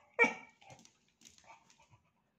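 A beagle gives one short, high cry just after the start, fretting at a fly that is bothering him, followed by a few faint small sounds.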